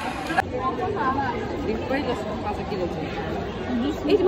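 Indistinct chatter of several voices talking over one another, with a short knock right at an edit about half a second in.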